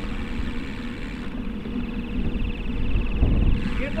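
Steady wind rushing over the microphone and rolling tyre rumble on asphalt from a racing wheelchair or handcycle moving at speed.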